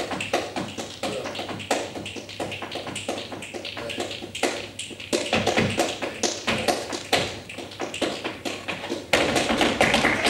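Flamenco footwork: a dancer's heeled shoes tapping and striking the wooden stage in an irregular pattern, with flamenco guitar playing softly underneath. The taps grow louder near the end as the dancing picks up.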